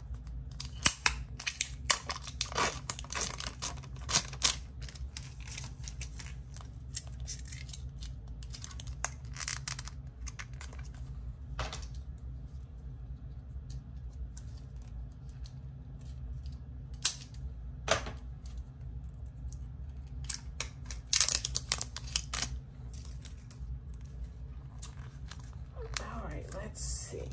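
Taped plastic packaging of a PanPastel set being handled and unwrapped: irregular clusters of sharp clicks and crackles, with a steady low hum underneath.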